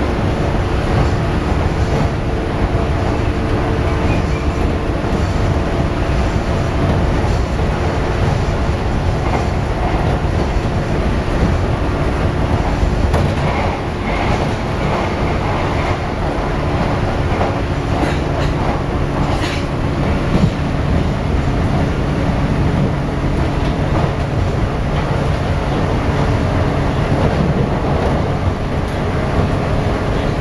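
Interior running noise of a JR West 413 series electric train: a steady rumble of wheels on rail with a steady hum that fades out around the middle, and a few sharp clicks.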